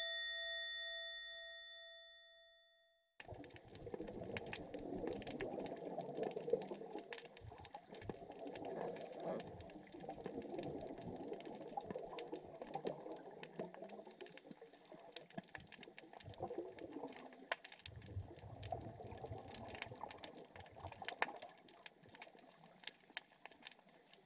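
A bright chime sound effect rings at the start and fades away over about three seconds. Then underwater ambience takes over: a steady crackle of sharp clicks over a rushing, bubbling wash that swells and ebbs every few seconds.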